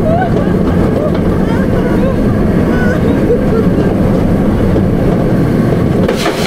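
Bolliger & Mabillard inverted roller coaster train running along the track with a loud, steady rumble of wheels and rushing air on the microphone. Faint voices rise briefly through the noise.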